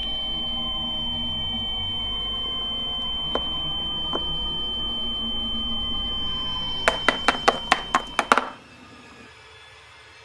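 A steady high-pitched electronic tone held over a low rumble, ending in a quick run of about eight sharp clicks, roughly five a second. Near the end both cut off suddenly, leaving a faint low hum.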